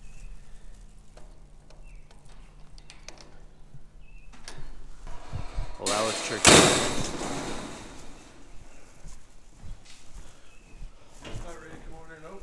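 Clicks, knocks and rattles of a lock and a metal mesh dock gate being worked open by hand, with a loud clattering burst about halfway through that fades over a second or so.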